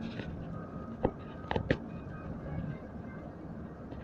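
Steady low rumble of a moving vehicle heard from inside the cabin, with a few sharp clicks about one to two seconds in.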